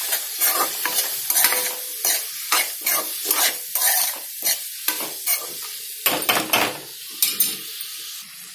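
Onions and tomatoes frying in hot oil in an aluminium kadai, stirred with a metal spatula: repeated scrapes against the pan, roughly two a second, over a steady sizzle.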